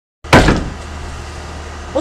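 Silence, then a single sudden loud thump about a quarter second in that fades quickly into steady room noise with a low hum.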